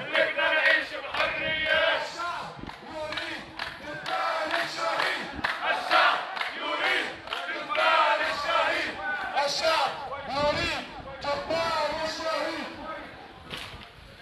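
A crowd of marchers chanting protest slogans, with loud shouted voices throughout that drop off a little near the end.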